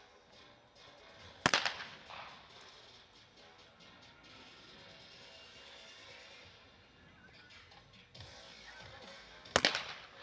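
Two trap shotgun shots, one about a second and a half in and one near the end, each a sharp crack with a short echo; both break their clay targets.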